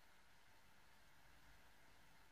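Near silence: faint steady room tone and hiss.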